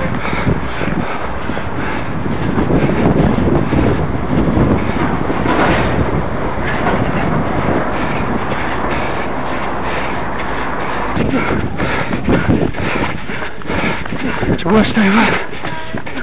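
Wind and handling rumble on a handheld camera's microphone carried at a run, a dense steady noise, with indistinct voices about twelve seconds in and again near the end.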